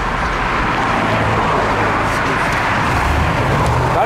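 Road traffic noise from cars on a street: a steady rush with a low rumble underneath.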